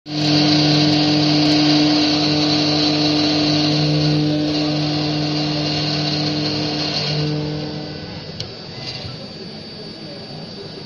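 CNC milling machine spindle with a small end mill cutting into aluminium sheet: a steady machine whine made of several held tones over a high, hissing cutting noise. About eight seconds in it drops noticeably quieter, with one sharp tick shortly after.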